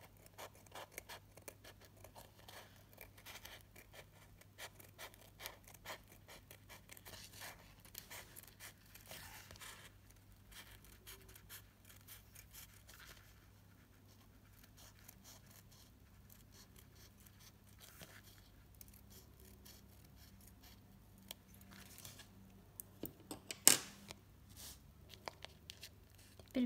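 Small scissors cutting a circle out of a sheet of glitter craft foam (foamiran): a long run of faint, short snips and rustles, with one sharper click near the end.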